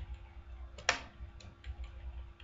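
Clicks from a computer mouse and keyboard: a few light clicks, with one louder, sharper click about a second in. A low hum runs underneath.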